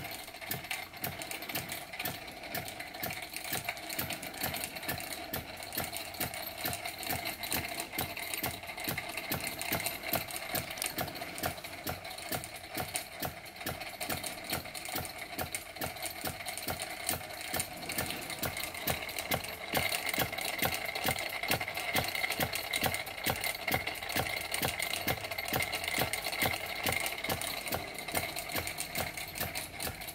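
Fleischmann toy steam engine running on compressed air, clattering at a rapid, even beat as it drives a small tinplate Wilesco carousel. It gets a little louder and higher about two-thirds of the way through.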